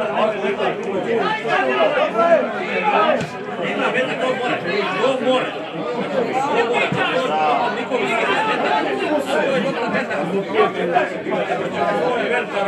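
Spectators chatting in several overlapping voices, a steady hubbub of conversation with no single voice standing out.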